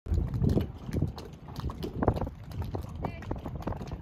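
Wind rumbling on the microphone, with irregular knocks and slaps of choppy water against a floating boat dock.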